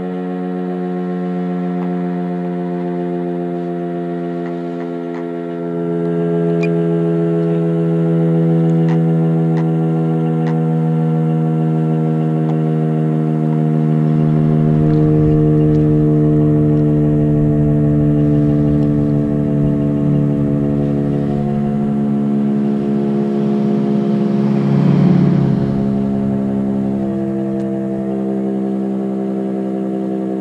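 Federal Signal Thunderbeam RSH-10A siren sounding several steady tones at once that slowly fall in pitch as it winds down at the end of its test cycle. Wind rumble on the microphone joins about halfway through, with a gust about 25 seconds in.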